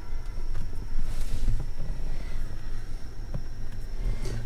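Rumbling handling noise with a few faint ticks and a soft rustle about a second in, as a dash cam is fitted and pressed into place on a car windshield.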